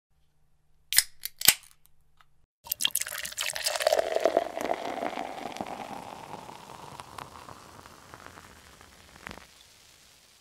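Two sharp clicks of a crown cap being levered off a beer bottle, then beer poured into a glass with fizzing. The pouring note rises as the glass fills and slowly fades out, with one last small click near the end.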